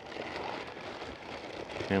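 Plastic wrapping around a boxed battery crinkling and rustling steadily as hands grip it, a soft continuous crackle.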